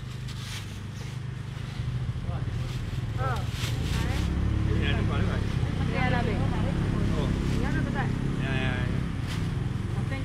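A motor vehicle's engine running close by, a low steady rumble that grows louder a few seconds in, under nearby voices.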